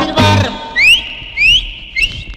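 A cumbia recording in which the full band drops out about half a second in, and a whistle fills the break: three quick rising swoops, roughly every half second, the last one held.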